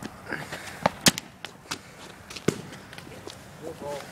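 Footsteps on an asphalt street: a handful of sharp, irregularly spaced clicks and scuffs, the loudest about a second in. A voice starts briefly near the end.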